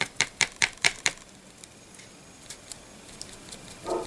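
Quick light taps, about five a second for the first second, then two fainter ones later: a piece of stippling foam dabbing paint onto a plastic miniature model.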